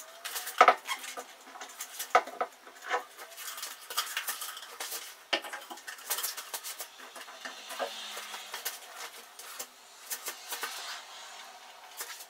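Hard plastic jars of a homemade ceiling lamp shade knocking and clicking as they are handled and fitted: an irregular string of sharp clicks and knocks, the loudest about half a second in.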